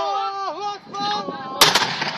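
A mortar firing a single round: one sharp, loud bang about one and a half seconds in, with a brief echoing tail.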